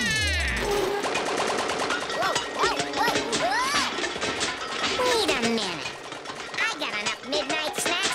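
Cartoon soundtrack: a falling pitch glide, then a rapid string of pops like machine-gun fire as a vending machine shoots cans, over music with short swooping pitched sounds throughout.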